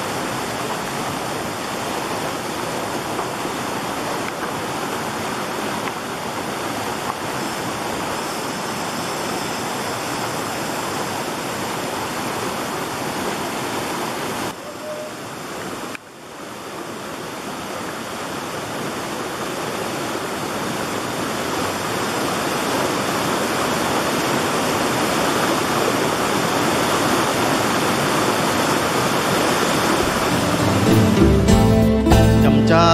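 Steady rush of a small jungle waterfall and stream. It drops briefly about halfway, then grows gradually louder toward the end.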